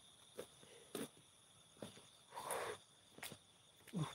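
Faint, scattered footsteps of a person walking over ground and grass, with a brief rustle about halfway through. A steady high chirring of crickets runs underneath.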